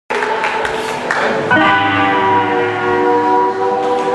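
Blues band playing live, amplified: guitar, bass, drums and keyboard. A few sharp hits in the first second and a half, then a full chord held and ringing from about a second and a half in, slowly fading.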